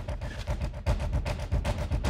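Handling noise from a small handheld microphone being fumbled with, heard as irregular bumps and rustles over a low rumble.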